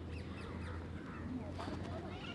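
Faint outdoor background of birds chirping: a few short, scattered calls over a low steady hum.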